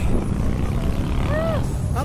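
Steady low rumble of wind buffeting the onboard camera's microphone as the slingshot ride capsule swings through the air, with one brief vocal sound about one and a half seconds in.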